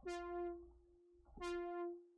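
Synth lead patch on Reason's Europa synthesizer playing two notes of the same pitch, one at the start and one about a second and a half in, each held briefly and fading. The patch is being auditioned while a delayed LFO vibrato is set up on it.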